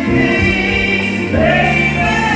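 A live soul band playing through a PA, with a woman singing lead over backing vocals in held notes and a voice sliding up and back down about halfway through.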